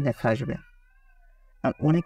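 A person talking in two short stretches with a pause between, and a faint wavering tone lingering in the pause.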